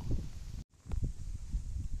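Outdoor ambience of low wind rumble on the microphone with a few faint clicks, broken by a split-second dropout to silence at an edit cut about two-thirds of a second in.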